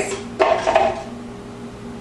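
Frozen strawberries tipped from a bowl knocking into a blender jar, a sudden clatter about half a second in that dies down over the next half second.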